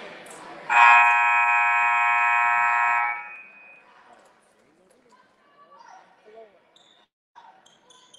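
Gym scoreboard horn sounding once, a loud steady buzz held for about two and a half seconds before cutting off, signalling the end of a timeout as the teams leave their huddles.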